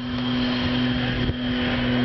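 A steady engine hum held at one constant pitch, with a brief dip a little over a second in.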